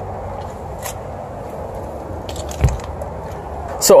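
Steady outdoor background noise with a few faint clicks and one low thump about two and a half seconds in.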